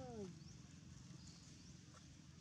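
A monkey gives one short whimpering call that falls steeply in pitch, right at the start, with faint high chirps of small birds in the background.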